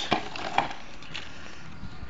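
Hands handling a plastic packing box and its paper contents: two sharp clicks, about a tenth of a second and about half a second in, then quieter handling noise.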